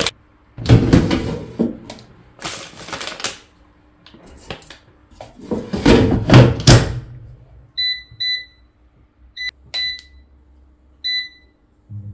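Plastic bakery bag rustling as brioches are handled, then the basket of a Cosori air fryer being slid into place. About five short, high electronic beeps follow from its touch control panel as the temperature and time are set.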